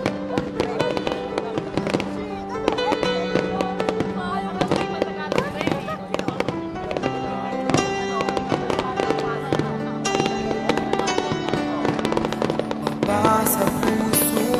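Music with long held notes plays throughout, mixed with fireworks shells bursting in many sharp bangs in quick succession.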